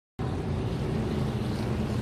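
A pack of NASCAR Truck Series race trucks' V8 engines running together at speed, a steady drone that cuts in suddenly just after the start.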